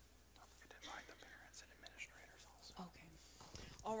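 Faint whispering and low murmuring voices with small rustling movements, in a quiet, reverberant room; clear speech starts at the very end.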